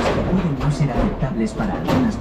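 A person's voice talking, without clear words.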